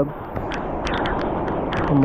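Heavy rain falling: a loud, steady hiss with many sharp ticks of raindrops striking the camera.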